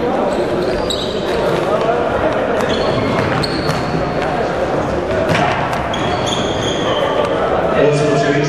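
Indoor futsal game in an echoing sports hall: indistinct shouting and chatter from players and spectators, with the ball being kicked and thudding on the wooden floor and brief high squeaks of shoes on the court.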